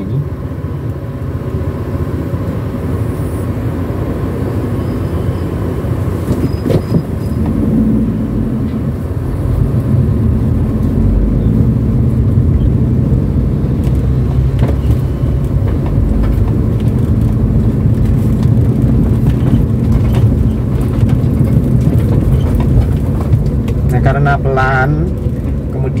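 A Daihatsu Terios's 1.5-litre four-cylinder engine and road noise heard from inside the cabin as it climbs a steep lane in first gear. The engine note grows louder from about eight seconds in as it works under load.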